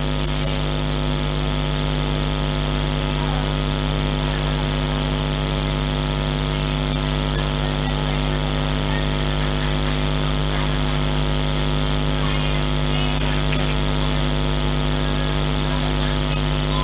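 A loud, steady electrical hum and buzz, unchanging throughout, with faint voices in the room behind it.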